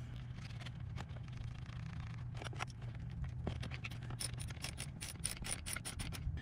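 Socket ratchet clicking as the nut on the car battery's positive terminal is tightened down on a charger lead: scattered light clicks and handling, then a quick run of sharp clicks, about five or six a second, in the last two seconds. A faint low hum runs underneath.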